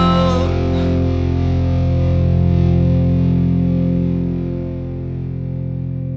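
A rock song's closing distorted electric guitar chord, held and ringing, fading slowly from about four seconds in.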